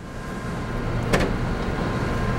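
Avery Dennison TrafficJet wide-format inkjet printer running with a steady whir, and a single click about a second in as its print-head height is switched from low to high.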